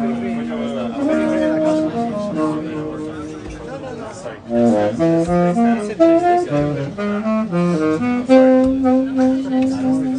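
Jazz saxophone playing with a small combo of piano, double bass and drums. It starts on long held notes, breaks into a quick run of short notes about halfway through, and ends on a long held note.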